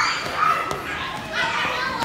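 Children's high-pitched shouts and squeals during a running tag game in a gym hall, with a brief sharp knock about three quarters of a second in.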